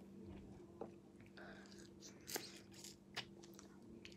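Quiet room with a steady low hum, broken by a few faint short clicks and soft smacking mouth noises from a person eating a sour ice lolly.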